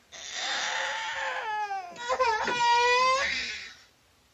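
Infant crying: a hoarse first wail that falls in pitch, a brief break, then a louder, clearer second wail that fades out before the end.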